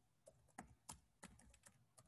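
Faint keystrokes on a computer keyboard: several irregularly spaced key taps while a line of text is typed.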